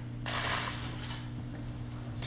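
A plastic squeeze bottle of raspberry sauce sputtering as it is squeezed onto a plate, a single short hiss lasting about half a second, over a steady low hum in the room.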